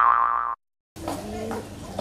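Comedic sound effect: a loud, held, wobbling tone that cuts off suddenly about half a second in, followed by a short dead silence and then faint low background hum.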